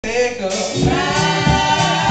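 Gospel vocal group of women singing together into microphones, amplified in a church, with a low regular beat underneath from a little under a second in.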